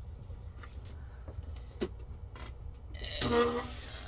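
A few faint taps and light handling sounds as a stiff paper journal card is moved and laid on a table, over a steady low hum. A drawn-out spoken "And..." comes near the end.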